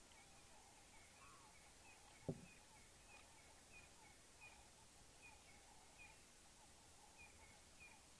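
Near silence with faint birds calling in the bush: a run of short, high chirps repeating every half second or so over softer chattering, and one soft knock about two seconds in.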